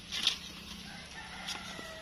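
A rooster crowing faintly, one held call starting about halfway through. Near the start there is a short rustle, and about one and a half seconds in a light click from scissors cutting okra off the plant.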